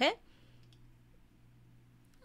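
A few faint clicks close together, a little under a second in, against near-silent room tone.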